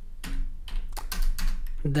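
Typing on a computer keyboard: a run of separate keystrokes, about three or four a second, over a steady low hum.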